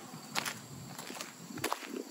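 A few light footsteps on concrete pavement, heard as soft separate scuffs and taps.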